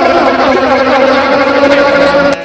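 A loud, steady held drone on one pitch with overtones, from a live free-improvised voice-and-guitar sound-poetry performance, with a few small sliding tones over it.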